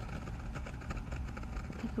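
A steady low background rumble with faint hiss, with no distinct event standing out.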